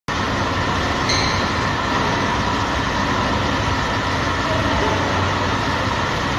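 Steady, even background noise with a few faint steady tones, with no distinct events.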